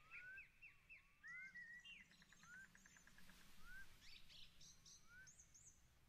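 Faint birdsong: several small birds chirping with short rising and falling whistled notes, and a quick trill about two seconds in.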